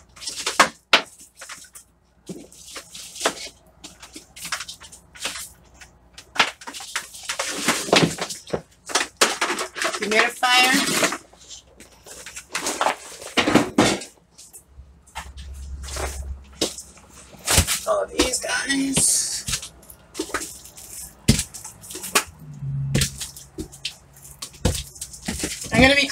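Scattered knocks and clatter of containers being handled and set down, with a woman talking briefly in between.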